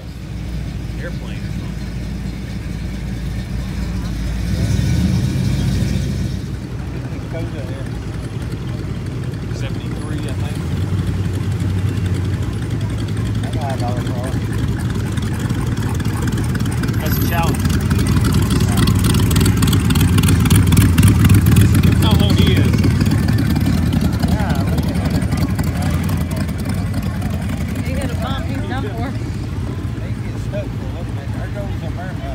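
Engines of a slow procession of classic pickups, hot rods and trucks passing close by on a road, a continuous low rumble that swells around five seconds in and again, loudest, about twenty seconds in.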